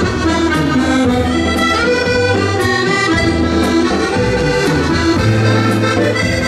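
Two accordions, one a Piermaria, playing a boléro melody in held, sustained notes over a live band, with drums keeping a slow, steady beat.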